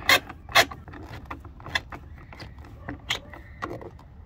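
A hand screwdriver turning a screw into the door trim panel behind the interior door handle: a run of light clicks and ticks, the two sharpest in the first second.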